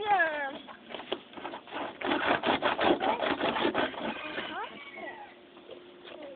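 A small pet piggy squealing: one high squeal falling in pitch right at the start, then a stretch of rapid scratchy noise, and a few short rising squeals near the end.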